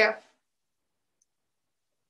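A woman's voice ends a spoken question in the first moment, then dead silence on the line.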